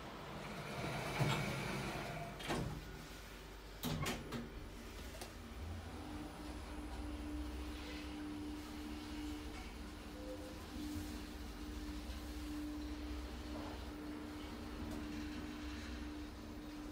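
Otis Gen2 lift doors sliding shut, with a couple of sharp clunks in the first four seconds. The car then travels down with a steady hum over a low rumble.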